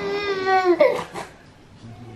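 A 9-month-old baby boy crying: one long cry held at a steady pitch that breaks off about a second in, then quieter.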